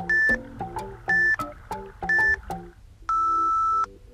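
Electronic interval-timer beeps over background music: three short high beeps about a second apart, then one longer, lower beep near the end, the countdown that marks the switch between work and rest intervals.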